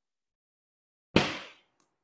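A single sharp slap a little past a second in, dying away within half a second, as a cut T-bone steak is handled on a plastic cutting board.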